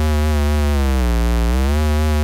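Low square-wave oscillator tone from Chrome Music Lab's Oscillators experiment, held steadily at about 76 Hz. Its pitch dips briefly a little past a second in and comes back up as the frequency is dragged.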